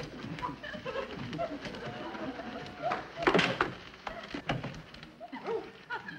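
A woman's wordless, muffled grunts and whimpers, with a few knocks as the wooden chair she is tied to bumps the floor while she hobbles.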